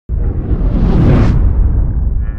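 Logo-intro sound effect: a loud whoosh over a deep rumble that starts suddenly, sweeps up to a high hiss about a second in, then settles back to the rumble.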